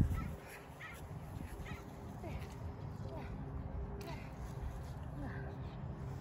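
Outdoor ambience: a steady low rumble, with a few faint, short calls or voices scattered through it.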